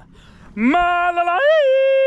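A man's voice singing out two long held notes, the second a step higher with a slight rise and fall, starting about half a second in.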